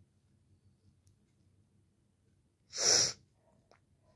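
A single short, sharp burst of breath noise from a person close to the microphone about three seconds in, against faint room noise.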